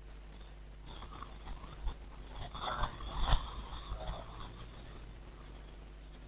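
Scratchy rustling and scraping noise close to the microphone, building to a peak about three seconds in with a few faint clicks, then easing off.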